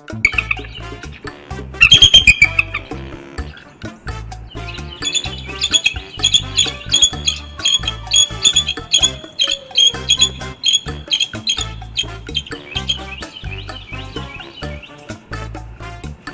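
Background music with a steady beat, over the high-pitched chittering calls of a pair of bald eagles mating. There is a loud burst of calls about two seconds in, then a long run of rapid calls from about five to twelve seconds in.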